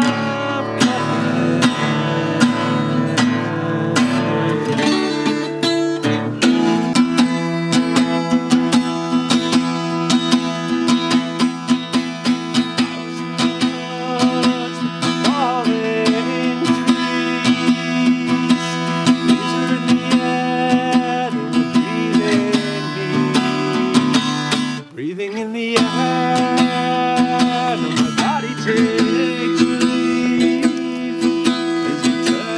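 Acoustic guitar strummed steadily while a man sings. The sound drops out for a moment about five seconds before the end, then the guitar and singing resume.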